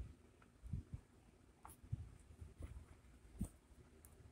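Faint, scattered knocks and clicks, about five or six over a few seconds, from hands handling test probes and a variable resistor on a workbench, in a quiet small room.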